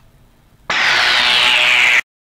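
A sudden loud rushing noise sets in about two-thirds of a second in, its hiss falling steadily in pitch, and cuts off abruptly at the end.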